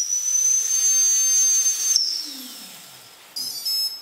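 Brushless outrunner motor, 1000Kv, spinning with no propeller under its ESC, giving a loud high steady whine that climbs slightly, then spinning down with a falling whine about halfway through as the throttle comes off. Near the end, a short burst of high beeping.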